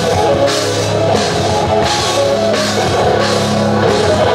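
Live rock band playing an instrumental passage: drum kit keeping a steady beat with regular cymbal hits, under electric bass guitar and keyboard.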